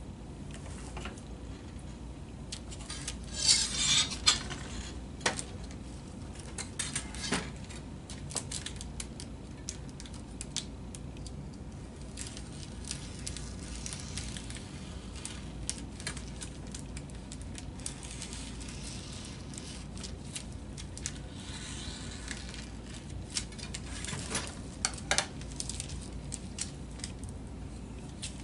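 Crinkling and rustling of transparent plastic covering film being handled and trimmed, with scattered clicks and light knocks of tools on a wooden workbench, over a low steady hum. The louder crinkly bursts come about four seconds in and again near the end.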